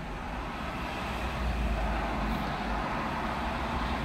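Low, steady motor-vehicle rumble with an even traffic hiss, swelling slightly in the middle and then easing.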